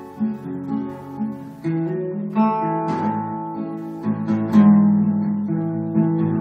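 Solo acoustic guitar with a capo, picked notes and chords ringing out in an instrumental passage, with a few louder chords in the second half.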